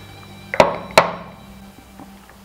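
Two sharp knocks about half a second apart as a metal cocktail shaker is tapped while the drink is strained from it into a glass. The tapping shakes the liquid loose, because passion-fruit seeds and strawberry pulp are clogging the strainer.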